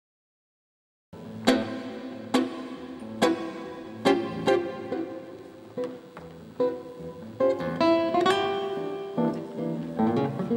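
Acoustic guitar playing a tango, starting about a second in with sharp accented chords a little under a second apart, then moving into sustained notes and running single-note lines.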